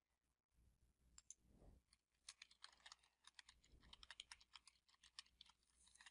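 Faint computer keyboard typing: a run of quick, irregular key clicks, thickest through the middle and later part, as a short phrase is typed.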